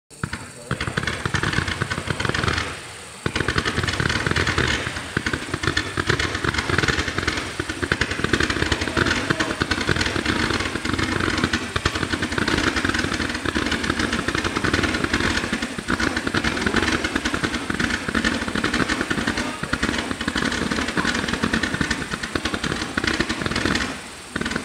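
A 0.8-inch, 300-shot roman candle barrage firing in a fast, unbroken stream of sharp pops, like a machine gun. It breaks off briefly about three seconds in, then runs on.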